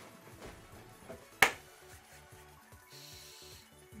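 Online slot game's win-celebration music playing quietly as the win counter tallies, with one sharp click about a second and a half in.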